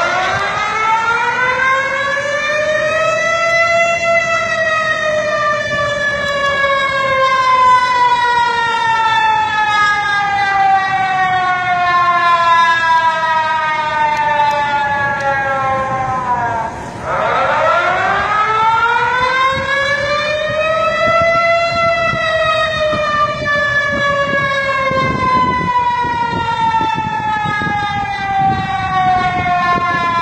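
Outdoor public warning siren wailing through two cycles: the pitch rises for about four seconds, then slowly falls for over ten seconds. It breaks off briefly about halfway through and winds up again for a second rise and slow fall.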